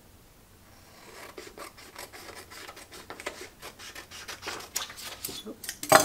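Scissors snipping through a folded sheet of paper along the fold line, a run of short cuts starting about a second in, with one louder click near the end.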